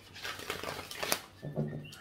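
A deck of tarot cards being shuffled by hand, a papery rustle with small clicks, then a domestic cat meowing briefly near the end.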